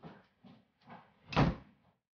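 An interior door shutting firmly about one and a half seconds in, after a few faint softer sounds.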